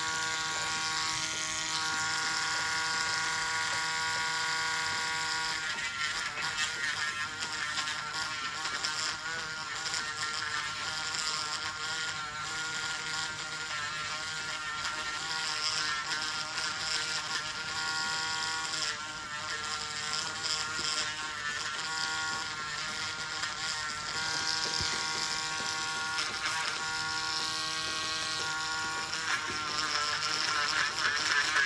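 A podiatry nail drill running with a steady whine while its burr grinds down a thick, yellowed big toenail. The pitch holds at first, then wavers and dips as the burr is pressed against the nail.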